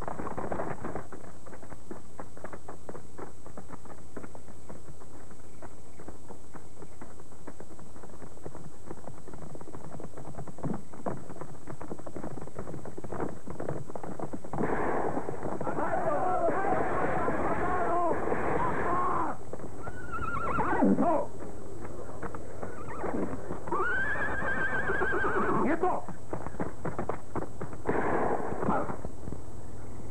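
Horses whinnying several times from about halfway through, over hoofbeats and scuffling. A steady hum and a faint high whine from a worn videotape soundtrack run underneath.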